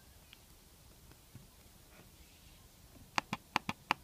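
Near quiet for about three seconds, then a quick run of about six sharp clicks from a finger pressing and tapping a MacBook Pro laptop trackpad.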